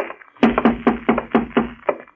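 A quick run of about seven sharp wooden knocks, about four a second, starting about half a second in: a radio-drama sound effect.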